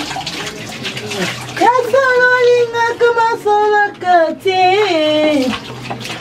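Water splashing, as from someone washing in a shower, for about the first second and a half and again near the end. In between, a high-pitched voice sings a melody.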